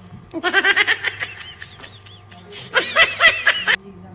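Two bursts of high-pitched laughter, each a quick run of repeated 'ha' syllables, the second about a second and a half after the first ends.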